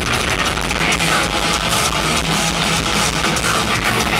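Thrash metal band playing live at full volume: distorted electric guitars, bass and fast drums in a dense, unbroken wall of sound.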